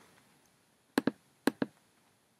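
Three sharp clicks of a computer mouse button, one about a second in and a quick pair about half a second later, against near-silent room tone.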